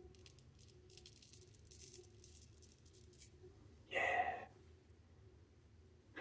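Faint, short scraping strokes of a big deep-hollow-ground Palmera straight razor shaving lathered cheek stubble, cutting smoothly with no dragging. About four seconds in there is a brief vocal sound from the shaver.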